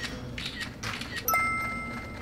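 A few short soft clicks, then a bright bell-like chime struck about 1.3 seconds in that rings on for most of a second: an editing sound effect.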